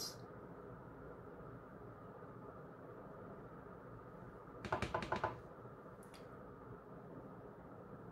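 Faint room tone, broken about five seconds in by a quick run of light clicks and taps from makeup tools and products being handled, with one more click a moment later.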